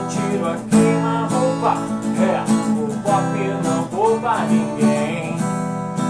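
Acoustic guitar strummed in a steady rhythm, playing chords.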